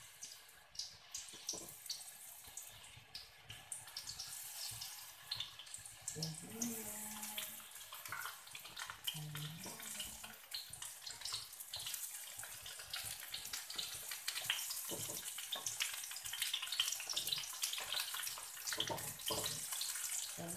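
Eggplant pieces frying in hot oil in an aluminium wok: a steady sizzle with fine crackling that grows louder as more pieces go in.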